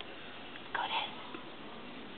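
A short whispered word, about a second in, against a quiet room background.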